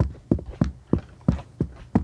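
Running footsteps on the wooden plank deck of a cable suspension footbridge: a steady run of sharp knocks, about three a second.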